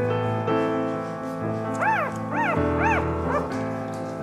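Background piano music with a newborn Staffordshire puppy crying over it: four short squeals in the second half, each rising and falling in pitch.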